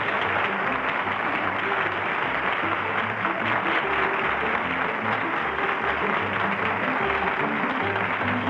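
Studio audience applauding over music with a bass line.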